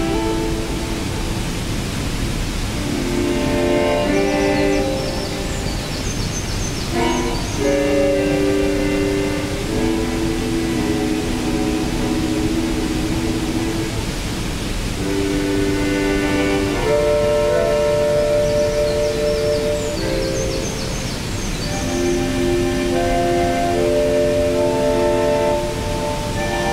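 Slow, sustained electronic synthesizer chords, each held one to three seconds before changing, played through a small portable speaker over the steady rush of a waterfall. Twice a brief flurry of high, glittering notes rises above the chords.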